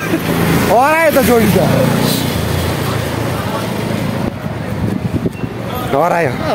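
A motorbike passing on the street, its engine and tyre noise carrying for a few seconds and thinning out after about four seconds. About a second in, a man gives one drawn-out call that rises and falls in pitch.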